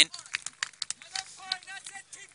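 Faint, distant voices, with a few short clicks scattered through.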